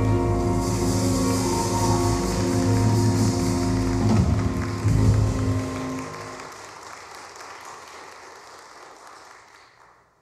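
A live jazz band's final held chord rings out and stops about six seconds in. Audience applause starts about half a second in and dies away near the end.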